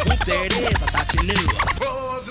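Turntable scratching over a hip-hop beat: quick rising and falling swoops of a record worked back and forth by hand, with heavy bass underneath. Near the end the bass drops out and a held note from the next record comes in.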